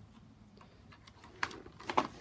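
Two short sharp clicks of a door lock being turned with a key, the first about a second and a half in and the second near the end.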